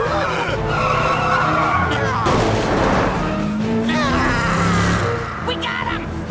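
Cartoon car-chase soundtrack: cars skidding and squealing their tires over chase music, with shouts and screams from the characters.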